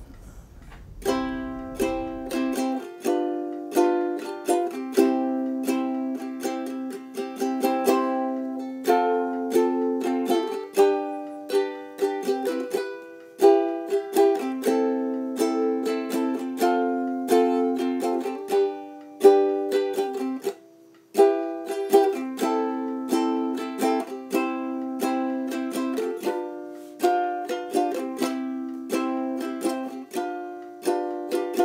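Background music: a solo ukulele playing plucked chords and melody notes, with a brief break about two-thirds of the way through.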